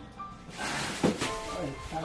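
A plastic carrier bag rustling as it is pulled out of a kitchen cupboard, with a couple of light knocks, over soft background music.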